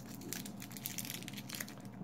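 Plastic wrapper of a 1991 Topps Stadium Club baseball card pack crinkling and crackling faintly as hands pull it open.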